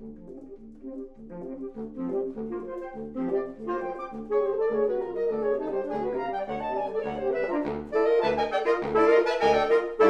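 A saxophone quartet (soprano, alto, tenor and baritone saxophones) playing together. The music starts softly and grows louder, most of all in the last two seconds, over short repeated low notes at about two a second.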